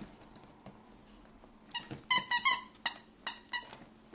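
Squeaker in a dog's squirrel toy squeaking as the dog bites and chews it: a run of about seven short, sharp squeaks starting a little before halfway, several in a quick cluster.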